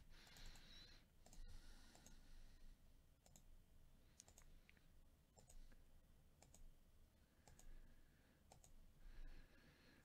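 Faint computer mouse clicks, about a dozen single clicks at irregular intervals, each a second or so apart, over near silence.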